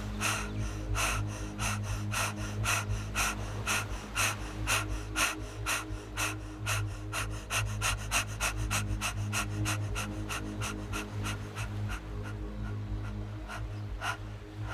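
A woman breathing audibly in and out through the open mouth in fast, even breaths that speed up from about two to about four a second, then stop near the end as the breath is held. This is accelerated breathwork breathing.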